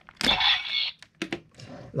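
Hard plastic scraping as the Karakuri Hengen toy weapon's handle is swung round on its holder, followed by a few light plastic clicks about a second in.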